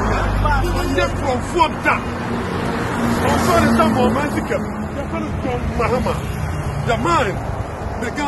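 Speech, not picked up as words, over steady low road-traffic noise.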